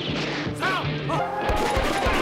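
Film-soundtrack handgun shots from revolvers and pistols, several sharp reports, the last ones close together near the end, over dramatic background music.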